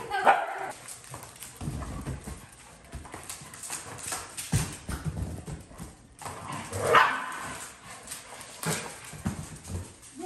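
Three dogs, a German shorthaired pointer, a corgi and a Pekingese, playing rough on a hardwood floor: claws clicking and paws scrabbling and thumping in an irregular patter. One short loud cry about seven seconds in.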